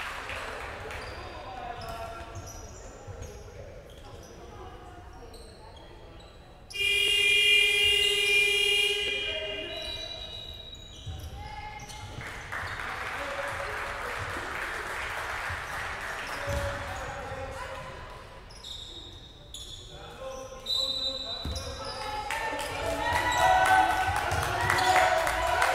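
A basketball scoreboard horn sounds once, suddenly, about seven seconds in, holding one steady tone for about two seconds and ringing on in the large hall. Around it come a ball bouncing and sneakers squeaking on the wooden court, with players calling out.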